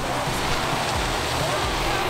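Steady outdoor rushing noise with a low rumble, in a pause between a man's sentences.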